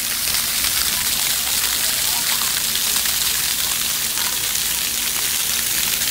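Splash-pad water jets spraying up from the ground and splashing down onto wet concrete: a steady, loud hiss.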